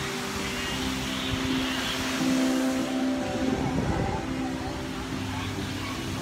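City street traffic: a steady vehicle engine hum over the general noise of the road, with a passing rise and fall near the middle.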